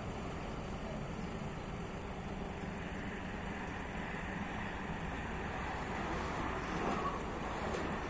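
Truck-mounted hydraulic loader crane's engine running steadily, a continuous low rumble, while the crane holds a suspended steel frame.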